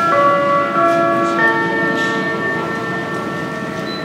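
Airport public-address chime: several bell-like notes struck one after another in quick succession, each ringing on and slowly fading. It is the signal that a boarding announcement, here a final call, is about to begin.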